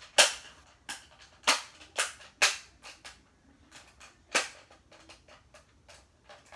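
Hard plastic parts of a taken-apart Bop It Extreme toy clicking and knocking together as a broken spinner piece is pushed into its casing: a string of sharp clicks, a few of them loud, with fainter ones between.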